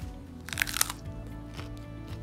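A crunchy bite into a raw broccoli head, a short burst of cracking about half a second in, over quiet background music.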